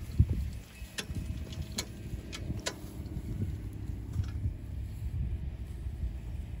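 A hand-pushed hay cart clicking and rattling a few times in the first three seconds as it is wheeled over grass, over a steady low rumble.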